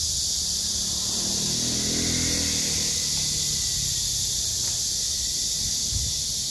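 Cicadas buzzing in the street trees, a loud, steady, high-pitched drone that never lets up. Underneath, a vehicle engine passes, loudest about two seconds in, then fading.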